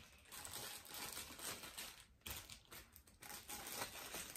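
Faint rustling and crinkling with many small irregular clicks: small ceramic figurines being handled and set down.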